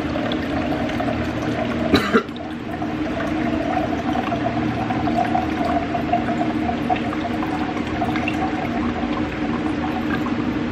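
Water pouring from a plastic pitcher into a clear plastic tumbler in a steady stream. A sharp knock about two seconds in.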